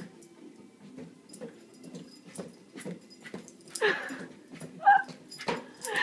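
A small dog whimpering in a few short bursts, the loudest about four seconds in, with scattered light taps, over faint music from a television.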